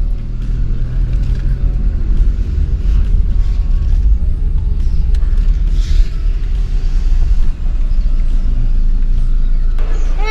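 Steady low rumble of a car's engine and tyres, heard from inside the cabin as the car rolls slowly forward.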